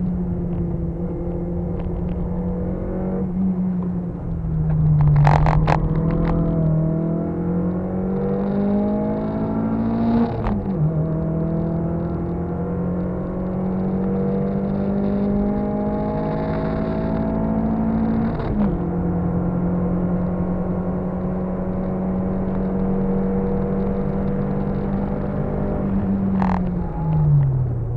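Car engine heard from inside the cabin, pulling hard under acceleration. The note climbs steadily and drops sharply at two upshifts, about ten and eighteen seconds in. A few sharp clicks come about five seconds in.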